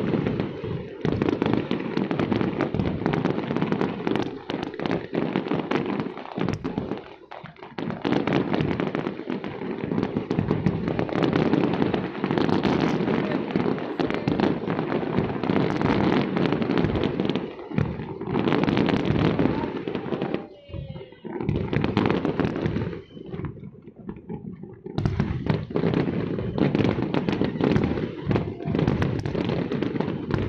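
Aerial fireworks display: a dense, unbroken run of bursting shells and crackling, easing briefly about twenty seconds in and again just before twenty-five seconds before picking up again.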